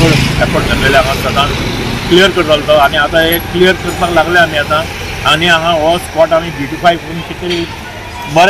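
A man talking over street noise, with a motor vehicle's engine running close by at the start and fading after about a second.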